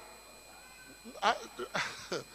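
Speech only: a brief pause, then a few short, quiet spoken words through a microphone in the second half.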